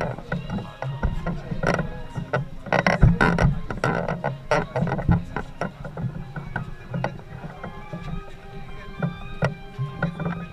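Wooden carrying poles of a processional statue frame creaking and knocking under the load as the bearers walk: irregular clicks, thickest about three to five seconds in. Music plays faintly behind, with a little crowd talk.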